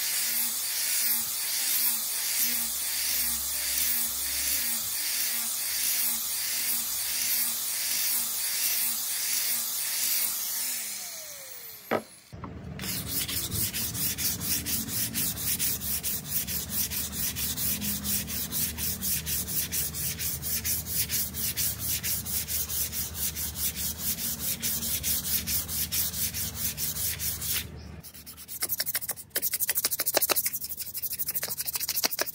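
Power sander with a round sanding pad running against a wooden knife handle with a steady pulsing whirr, winding down about twelve seconds in. Then a sheet of sandpaper is rubbed by hand back and forth along the wooden handle in quick, regular strokes, with a short pause near the end.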